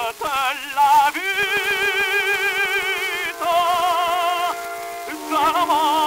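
Operatic tenor with orchestra, played from an acoustic-era 78 rpm disc recorded around 1911: the tenor sings mostly long held notes with a wide vibrato, changing pitch twice, with a brief dip in level shortly before the last note begins.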